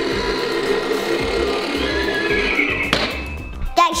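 Music playing, with recorded horse-neigh sounds from an electronic ride-on unicorn toy. A single sharp click comes about three seconds in.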